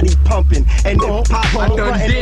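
Hip hop track: a rapped vocal over a beat with a deep, steady bass line.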